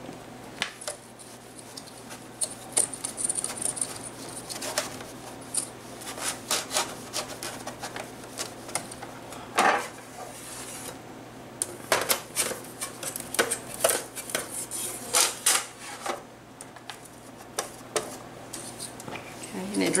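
A cloth wiping the glass of a picture frame clean with rubbing alcohol: irregular short rubbing strokes and squeaks, with the odd knock as the frame is handled on the countertop.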